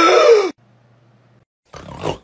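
A man's loud, held vocal cry, an exaggerated shocked 'aah' that falls in pitch and cuts off about half a second in. After a second of quiet, a short breathy noise comes near the end.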